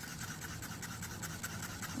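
A wooden stir stick scraping round the inside of a small paper cup while mixing red paint, in quick, even strokes.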